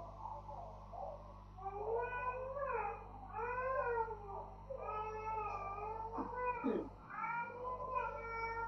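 A high-pitched voice in a run of long, drawn-out notes that rise and fall, starting about a second and a half in.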